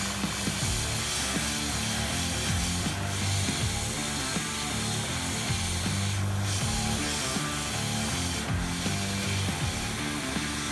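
Gravity-feed airbrush spraying yellow contrast paint: a steady hiss of air and paint that thins briefly three times as the trigger is eased. Under it runs a louder low hum that shifts in pitch.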